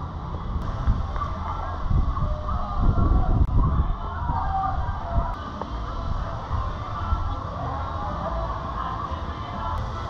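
Outdoor background with a low rumbling noise that swells about two to four seconds in, and faint music underneath.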